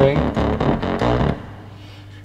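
Playback of layered electronic music: a low, bassy synth layer with a sweepy, swooshy, breathy pad over it. It stops about a second and a bit in.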